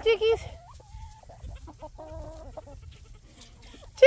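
A woman's rapid, repeated high-pitched chicken-calling cry, a call the hens know means treats, stops about half a second in. It is followed by a quiet stretch with a few soft clucks from free-ranging hens.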